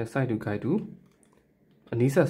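A man speaking Burmese for about the first second, then a pause of near silence.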